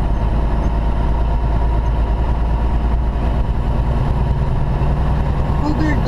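Steady drone of an 18-wheeler's diesel engine and road noise heard inside the cab while cruising on the highway.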